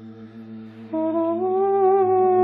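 Male voices singing in Georgian polyphonic style: a low drone held on steady pitches, over which a louder upper voice enters about a second in and slides upward in pitch.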